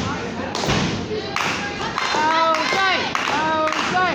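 Two dull thuds on a wrestling ring's mat, about a second apart, as the wrestlers grapple. Voices call out from about halfway through.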